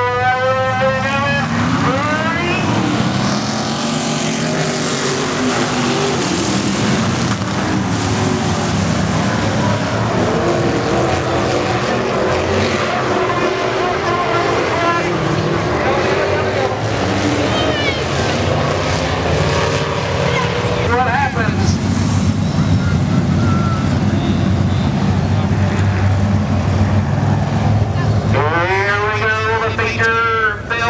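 A pack of dirt-track race cars running at speed, their engines rising and falling in pitch as the cars accelerate out of the turns and pass by. The sound is loud and continuous, with sharp rising revs near the start and again near the end.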